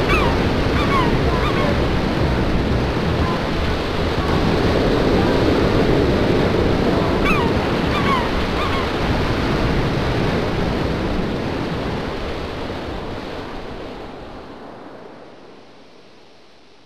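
Steady rushing noise like surf on a shore, with a few short falling cries near the start and again about seven seconds in; it all fades out over the last few seconds.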